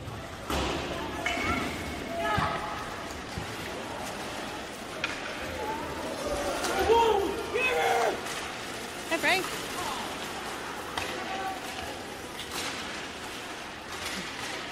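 Ice hockey game sounds from the stands: scattered shouts from people in the rink, with sharp knocks of sticks and puck against the ice and boards over a steady rink hubbub.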